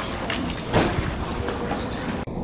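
Wind buffeting the microphone over steady outdoor background noise, with a brief bump a little under a second in.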